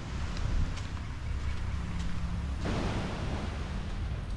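Wind buffeting the camera microphone outdoors, a steady low rumble under a rushing hiss. The background changes abruptly about two and a half seconds in, where the shot changes.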